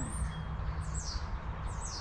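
Small birds chirping faintly in the background: a few short, high, quickly falling chirps, two about a second in and two more near the end, over a steady low rumble.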